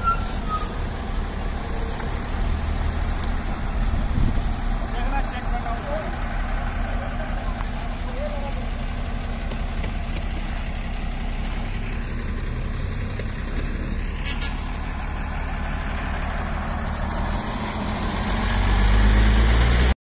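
A truck engine running at close range, a steady low rumble with people talking faintly in the background. The rumble grows louder near the end.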